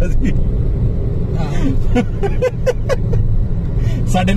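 Steady low road and engine rumble inside the cabin of a moving Honda Amaze, with brief laughter and voices near the middle.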